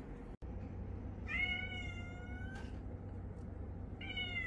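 A domestic cat meowing once, a single long high-pitched meow starting about a second in and lasting over a second.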